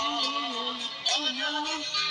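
A woman singing a slow romantic ballad over a backing track. Her melody bends up and down with no clear words.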